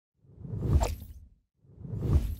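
Whoosh sound effects of an animated logo intro: one whoosh swells up and fades away within about a second, and a second one begins just before the end.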